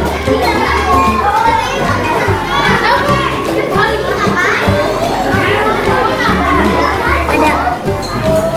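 Many children's voices chattering at once, with background music and its low bass line running underneath.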